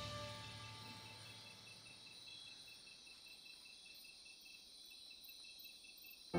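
Background music fading out in the first second, leaving near silence with faint crickets chirping in an even, repeating pattern.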